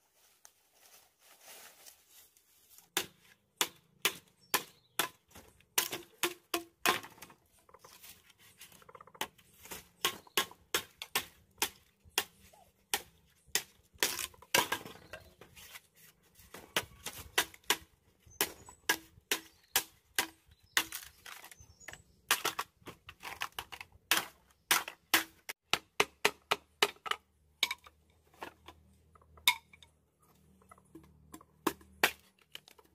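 An irregular series of sharp taps or knocks, several a second in runs broken by short pauses, starting about three seconds in.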